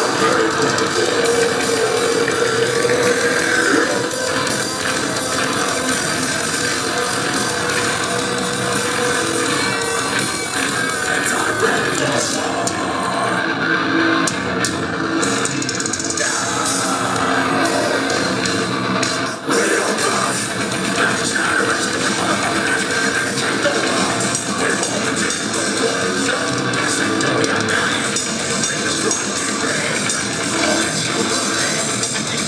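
Metal band playing live: distorted electric guitars, bass and drum kit at full volume, heard from the crowd, with a brief drop in the sound about two-thirds of the way through.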